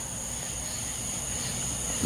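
Night insects chorusing, a steady high continuous drone in two pitches, over a faint even hiss of rain.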